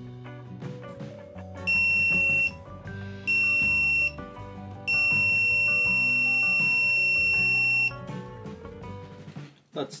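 Rocket altimeter's piezo beeper (Eggtimer Proton) sounding on power-up just after its battery is connected: two short beeps, then one long beep of about three seconds, all on the same high tone. Background music plays underneath.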